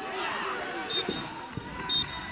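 Referee's whistle blown in short blasts, about a second in and again near the end, over players shouting to each other.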